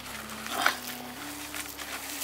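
A gloved hand scraping and scooping dry, gravelly soil, with a short, sharp sound a little over half a second in. Under it runs a low steady tone that steps up and down in pitch.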